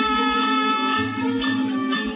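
Traditional Teochew opera ensemble playing an instrumental passage between vocal lines, led by plucked strings over sustained pitched notes.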